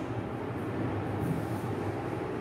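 A board duster rubbing across a whiteboard to wipe off writing, with faint strokes about twice a second over a steady low rumble.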